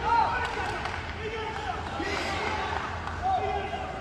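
Short, high, rising-and-falling shouts in an indoor hall, repeated several times, with a few sharp thuds of strikes landing in the first second while the two fighters exchange blows.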